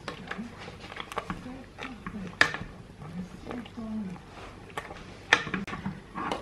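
Wire potato masher mashing soft boiled pumpkin in a soup pot: irregular knocks and clicks of the masher against the pot, with wet squelching. The loudest knocks come about two and a half seconds in and again a little after five seconds.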